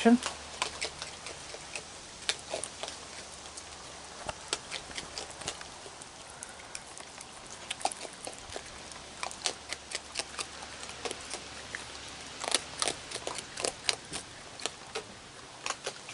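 Raccoons crunching dry kibble and sunflower seeds: irregular sharp crunches and clicks, coming thickest about halfway through and again near the end.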